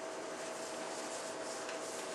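Steady hiss with a faint steady hum: the background noise of the meeting-room recording, with no distinct sound events.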